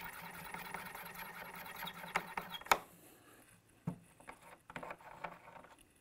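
Forster Original Case Trimmer with its 3-in-1 cutter, hand-cranked against a brass rifle case mouth: a steady rasp of the blades trimming and chamfering the brass for the first two to three seconds, ending in a sharp click. A few light clicks and taps follow as the trimmer is handled.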